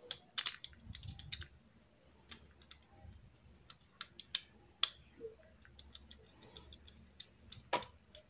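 Small screwdriver tightening a screw into a standoff on a circuit board, giving irregular small clicks and ticks as the tip works in the screw head.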